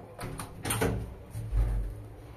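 Car button pressed on an old 1958 Schindler relay-controlled traction elevator, with a few sharp clicks from the button and controls, then a heavy low thump about a second and a half in as the car's machinery responds.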